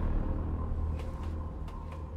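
Low cinematic rumble fading out, the decaying tail of a loud closing boom, with a few faint clicks over it.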